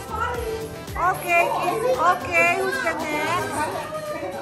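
Several women's voices talking and calling out excitedly, some high-pitched, over background music.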